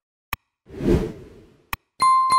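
Animation sound effects: a sharp mouse-click, then a whoosh that swells and fades over about a second, then another click near the end.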